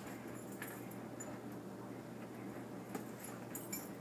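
Quiet room with a steady low hum and a few faint clicks as a toaster's plug is pushed into the wall socket and handled.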